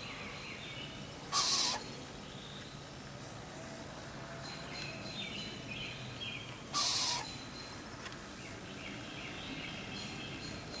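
An owlet hissing twice, each hiss about half a second long, about a second and a half in and again about seven seconds in. Faint chirping of other birds runs in the background.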